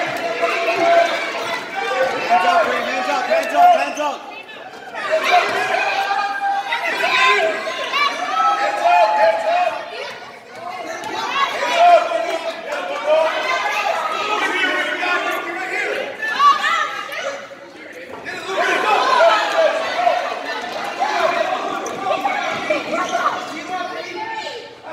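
Indistinct chatter of several voices, echoing in a large gymnasium, with short lulls between stretches of talk.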